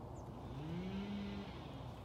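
Faint distant chainsaw revving up as trees are being cut down. Its pitch rises about half a second in, holds steady, then fades near the end.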